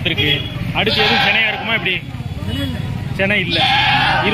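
Goats bleating: a loud, wavering bleat about a second in and another starting near the end, over the chatter of a crowd of people.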